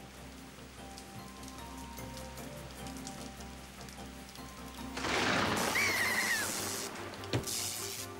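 Cartoon background music with steady held notes over a rain sound effect. About five seconds in, a loud rush of storm noise comes in, with a short wavering high cry over it, and a second burst of noise follows shortly before the end.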